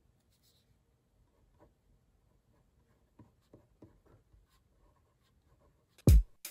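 Near silence with a few faint, short taps: one about a second and a half in, then three in quick succession a little past halfway.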